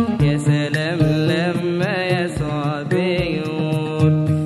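Music of an Arabic Coptic Orthodox hymn: a wavering, vibrato-laden melody over held low notes.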